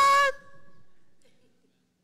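A man's shouted, drawn-out word held on one pitch, cut off about a third of a second in; its echo fades in the hall over the next second, leaving near quiet.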